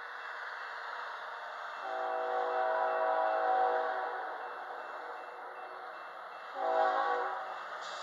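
Air horn of an approaching BNSF GE ES44C4 diesel locomotive, several tones sounding together: a long blast of about three seconds, then a short blast about six and a half seconds in, part of the long-long-short-long grade-crossing signal. The steady rushing noise of the oncoming train runs underneath.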